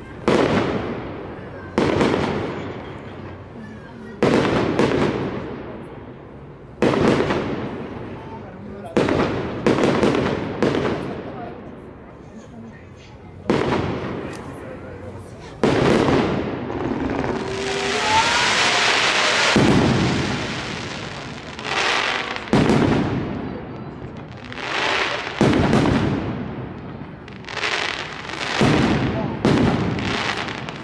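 Aerial fireworks shells bursting in a string of loud bangs, one every second or two, each followed by a rolling echo. About halfway through, a few seconds of steady hissing, with a brief rising whistle in it, cuts off suddenly.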